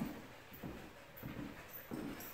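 Faint sounds of a dog, with soft low thumps of footfalls on a wooden floor about every half second as the dog and handler set off walking.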